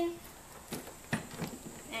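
Two light knocks of a plastic engine air box being pressed and jiggled into place, about three-quarters of a second and just over a second in. Before them comes the drawn-out end of a woman's word.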